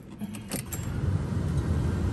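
Starter cranking the 1970 Ford Mustang Mach 1's 351 Cleveland V8: a low rumble that builds steadily, with a light click about half a second in.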